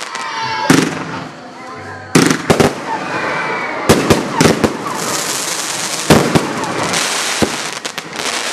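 A 65-shot consumer firework cake firing. There are sharp bangs of bursting shots at uneven intervals, with dense crackling from the crackle stars in between.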